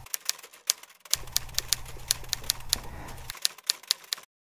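Typewriter keys clacking in a quick, slightly irregular run of about five strikes a second: a typing sound effect laid under a title card as its text appears.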